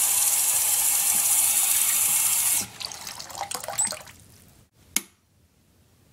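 Water running from a tap into a sink basin: a steady rush that stops after about two and a half seconds, followed by fainter trickling and splashing. A single sharp click comes about five seconds in.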